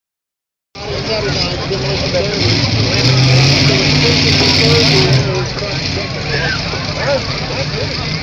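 Modified pulling tractor's engine running steadily, loudest from about two to five seconds in, over the chatter of the crowd.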